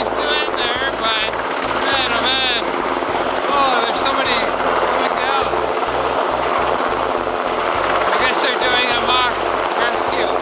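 Sikorsky S-92 helicopter hovering low, its rotor and turbine noise loud and steady throughout, with a wavering whoosh as the sound shifts.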